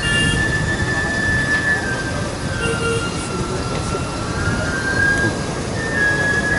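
Wind buffeting the microphone in a steady rumble, with a high, sustained whistle over it that drifts slowly down and back up in pitch.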